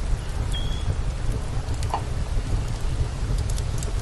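Outdoor wood fire with a pot simmering on its coals: a steady hissing rush with a few scattered crackles, over a constant low rumble.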